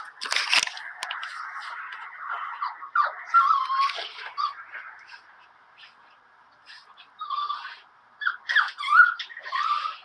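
A dog whining and yelping: a string of short whines that rise and fall in pitch, with a quiet spell in the middle.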